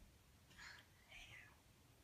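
Near silence, with two faint breathy sounds about half a second and about a second in.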